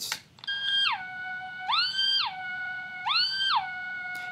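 Speed-modded cassette player playing a tape of a single steady tone, its pitch changed by push-buttons that switch in potentiometers in place of the motor's speed-control trimmer. The tone starts about half a second in and slides down. It then twice glides smoothly up to a higher pitch and back down as the tape speed changes, a warbly, theremin-like swoop.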